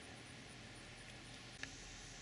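Near silence: a faint steady background hiss with a thin high tone pulsing about four times a second, and one faint click about one and a half seconds in.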